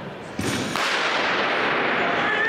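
Starter's pistol cracks once about half a second in to start a sprint race, and a loud crowd cheer follows straight away and keeps going.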